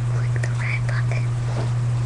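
A loud, steady low hum with faint whispering over it.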